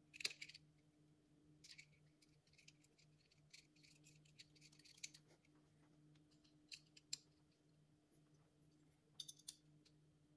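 Faint metallic clicks and scrapes of a hex key turning the mounting screws of a power drawbar unit on a Bridgeport mill head, in a scattered handful, the loudest cluster right at the start. A faint steady low hum runs underneath.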